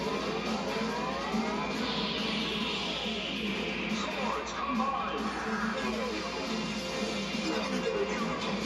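Action-show soundtrack music with sound effects of a robot combining sequence: several sweeping pitch glides and a swoosh, heard as played from a television.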